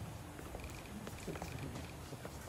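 Quiet church room sound: a steady low rumble with faint scattered small noises and a few faint short high tones.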